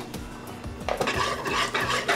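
Wire whisk beating a runny egg-and-milk batter in a plastic bowl: rapid clicking and sloshing of the whisk against the bowl, starting about a second in, over soft background music.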